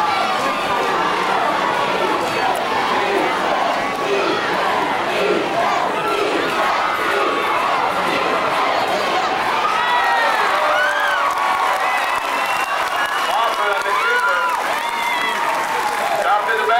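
Football stadium crowd cheering and shouting during and after a play, with single voices shouting out more clearly in the second half.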